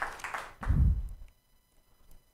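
Scattered hand claps fading out in the first half second, then a single low thump, and near silence for the last second.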